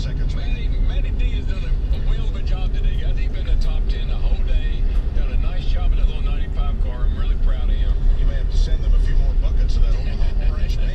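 Pickup truck's engine and road rumble heard from inside the cab while driving slowly, with indistinct voices over it.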